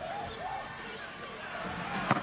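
Basketball arena ambience during live play: a steady crowd murmur with faint voices, and the sounds of play on the hardwood court.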